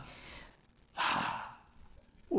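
A man's breath close to a pulpit microphone: one short, breathy rush of air about a second in, lasting about half a second.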